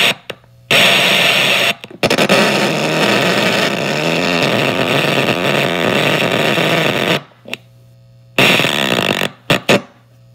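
Sputter-Box, a homemade noise box whose spring-fitted wires are pressed against a piezo element and played through an amplifier, giving harsh, sputtering noise in stop-start bursts. A long run of several seconds wavers in pitch like a gargle. It then cuts out for about a second and comes back as a shorter burst and a few quick stutters near the end, with a low amplifier hum in the gaps.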